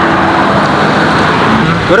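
Steady road traffic noise from passing cars.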